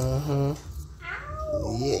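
A man's wordless vocalizing: a short held hum at the start, then a drawn-out, gliding sing-song exclamation in the second half.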